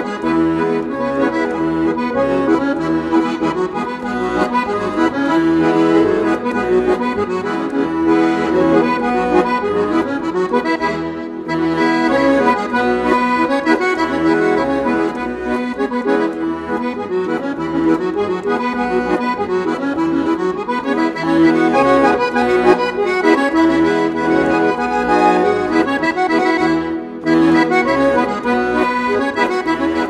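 Instrumental background music with held notes, dipping briefly twice.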